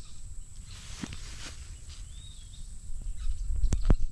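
Wind rumbling on the microphone during outdoor handheld filming, swelling near the end with a few clicks and knocks. A short faint bird chirp comes about halfway through, over a thin steady high tone.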